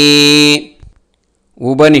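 A man chanting a Vedic tarpanam mantra. He holds the last syllable of 'tarpayami' on one steady note until about half a second in, then stops, and the next word starts after about a second of silence near the end.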